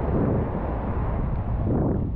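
Wind buffeting the microphone over small waves breaking and washing up the beach, a steady rough rush strongest in the low end.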